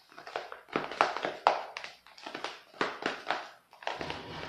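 Utensil stirring whipped cream in a bowl: an irregular run of light taps and scrapes against the bowl as pink whipped cream is mixed in.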